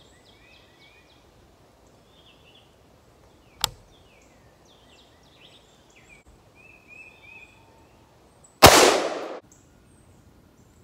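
A single AR-15 rifle shot about nine seconds in, its sound trailing off over most of a second. About a third of the way in there is one sharp click, and birds chirp throughout.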